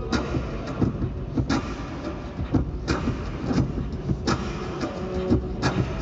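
Live beatboxed percussion loop played loud through an arena PA: a heavy, repeating beat with a strong hit about every second and a half and quicker mouth clicks and thumps between them, with no singing over it.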